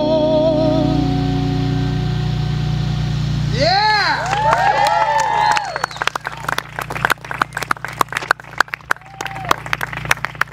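The final acoustic-guitar chord of a song rings out under a held, wavering sung note that ends about a second in. Around four seconds in, a few audience voices whoop and cheer, and scattered hand clapping follows to the end.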